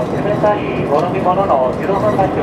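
An onboard announcement over the train's public-address speakers, with the running noise of a JR Shikoku 2000 series diesel tilting train underneath.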